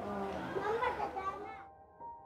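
Faint background voices, fading out about a second and a half in as soft piano music begins.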